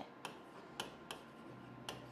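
A few faint, sharp ticks of a pen tip tapping on an interactive whiteboard screen while writing, spread irregularly over two seconds.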